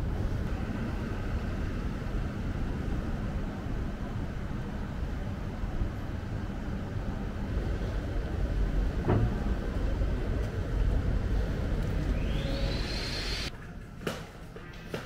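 City street ambience: a steady low rumble of traffic and town noise, with one sharp knock about nine seconds in and a brief rising whine shortly before the sound cuts off abruptly to a quieter room.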